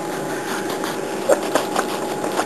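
Rustling and light bumps of hands and denim jeans handled right against the microphone, over a faint steady hum.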